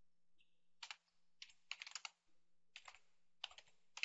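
Faint keystrokes on a computer keyboard, typed in several short quick runs with brief pauses between them.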